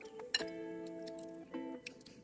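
Background music with held notes, over which a fork and spoon clink against a plate a couple of times, sharply about a third of a second in and again near the end.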